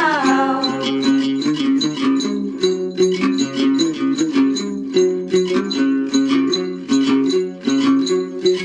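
Tày đàn tính gourd lutes playing an instrumental interlude of quick, rhythmic plucked notes. A sung phrase trails off in the first moment.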